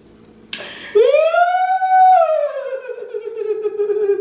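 A woman's long, drawn-out wailing "ooh": a breathy start about half a second in, then one held note that rises to a peak about two seconds in, slowly slides lower and holds.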